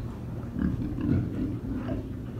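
A group of pigs grunting together: many short, overlapping low grunts.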